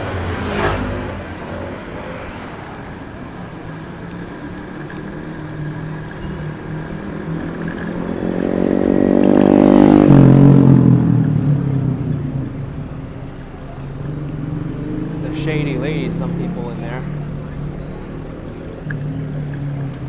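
City street traffic heard from a moving electric scooter. A motor vehicle's engine passes close by, growing louder to a peak about halfway through, then drops in pitch and fades as it goes past. Voices of people nearby are heard briefly a little later.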